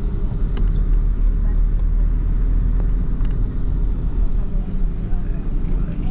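Steady low engine and road rumble heard inside the cabin of a moving vehicle, with a few faint ticks.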